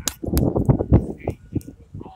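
Footsteps on weathered wooden boardwalk planks: several short, sharp knocks at an uneven pace over a low rumble.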